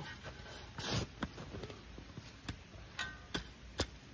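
Shovel cutting into and turning over garden soil mulched with wood chips: a string of short scrapes and knocks at irregular intervals.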